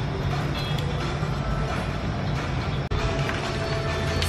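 Background music playing steadily. It drops out for an instant about three seconds in.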